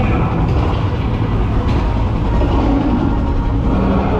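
A loud, steady low rumble from a dark ride's show soundtrack of action sound effects, with no dialogue or music over it.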